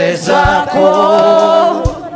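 A voice singing a worship song through a microphone and PA, holding one long note in the second half. Two low drum thumps come about half a second in and near the end.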